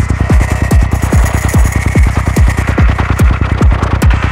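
Progressive psytrance track: a steady four-on-the-floor kick drum, each kick a short falling-pitch thump about twice a second, with bass filling between the kicks, fast hi-hat ticks and a held synth tone above.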